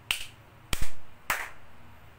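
Three sharp hand claps about half a second apart, the middle one the loudest, each with a short ring of the small room after it.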